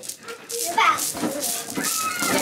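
Young children's voices as they play: high, gliding calls and chatter that start about half a second in, after a brief lull.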